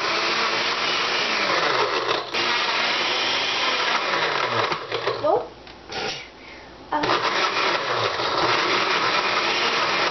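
Countertop blender on low with the pulse button held down, blending ice cubes and fruit into a smoothie; the motor runs steadily with its pitch wavering as the load shifts. It stops about five and a half seconds in and starts again about seven seconds in.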